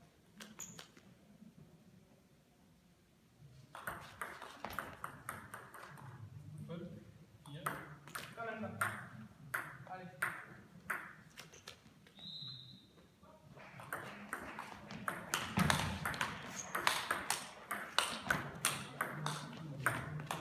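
Table tennis ball clicking sharply off bats and the table, in irregular runs of quick clicks from a few seconds in and most tightly packed during a rally near the end, with voices talking in the hall.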